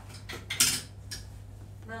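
A few sharp clinks and clatters of small hard objects being handled, the loudest about half a second in, over a steady low hum.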